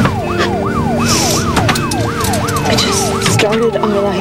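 Ambulance siren in a fast yelp, its pitch sweeping up and down about two and a half times a second without a break.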